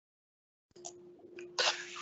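Dead digital silence, then a call microphone opening less than a second in, bringing a faint steady hum and a couple of soft clicks. Near the end comes a short, sharp, sniff-like breath.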